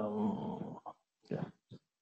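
A man's wordless voice, a drawn-out sound lasting about a second, followed by a few short faint noises.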